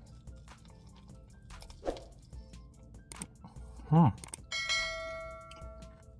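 Chewing, with small mouth clicks, through a bite of sandwich; about four and a half seconds in, a bright bell chime from a subscribe-button notification sound effect rings out and fades.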